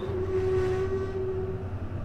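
Elevator giving one steady, held tone with an eerie, haunted sound that cuts off just under two seconds in, over a low steady hum.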